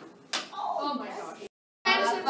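A single sharp slap-like click about a third of a second in, followed by a brief voice-like sound. The sound then drops to complete digital silence at an edit cut.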